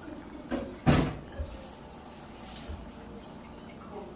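A few sharp knocks and a clatter of kitchen things being handled, the loudest about a second in, followed by a soft hiss.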